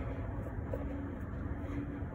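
Steady low background rumble with a faint steady hum.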